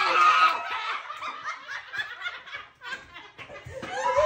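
A group of people laughing: loud at first, then falling away into short, scattered laughs.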